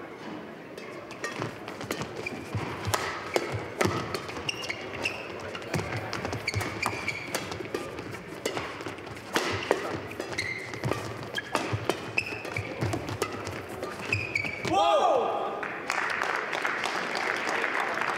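Badminton doubles rally: rackets hitting the shuttlecock in quick, irregular exchanges, with short squeaks of shoes on the court floor. About fifteen seconds in the rally ends with a loud shout, followed by applause.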